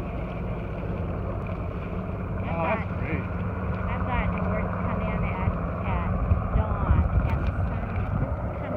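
Navy helicopter flying past overhead, a steady low rumble, with wind on the microphone and people talking.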